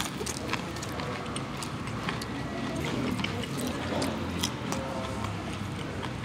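Low, steady room hum and faint background music of a fast-food restaurant, with small scattered crackles from crispy fried chicken being handled and chewed.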